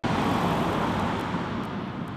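Road traffic noise: a steady rushing that cuts in abruptly and eases slightly.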